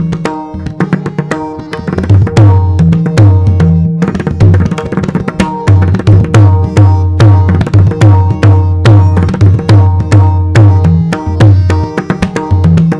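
Pakhawaj solo: fast strokes on the treble head with deep, ringing bass strokes on the left head, in a dense rhythmic composition. The bass strokes drop out for the first couple of seconds, leaving only treble strokes, then come back in regular groups.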